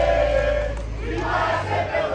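Crowd of football supporters shouting and chanting together: a long held collective call, a brief dip, then a second swell about one and a half seconds in. Underneath runs a steady low rumble that cuts off near the end.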